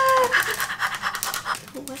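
A woman's drawn-out high "ooh", falling slightly in pitch, trails off a moment in, followed by a second or so of rapid breathy crackling and a gasp near the end.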